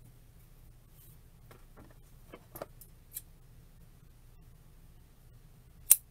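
Craft ribbon being handled and shaped by hand: a few faint rustles and light clicks in the middle, then one sharp click near the end, over a quiet room hum.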